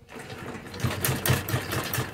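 Domestic sewing machine stitching fabric in a quick, even rhythm of needle strokes, louder from about a second in.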